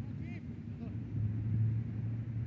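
Two brief shouts from soccer players during a goalmouth scramble, about a third of a second and just under a second in, over a steady low rumble.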